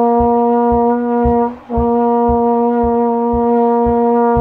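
Tenor trombone holding a long tone on middle B flat as a warm-up, a steady even note that breaks off briefly about one and a half seconds in and then resumes. A low regular thump sounds about twice a second underneath.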